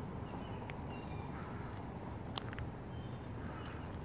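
Quiet outdoor ambience: a steady low rumble with a few faint, short bird chirps.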